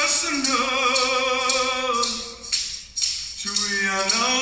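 A man singing a traditional Wolastoq song unaccompanied, holding long notes with a wavering vibrato; near three seconds in the voice breaks off for a short breath, then comes back on a lower note.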